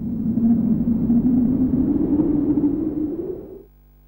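A rumbling whoosh sound effect: a noisy swell whose pitch slowly rises, then fades out about three and a half seconds in.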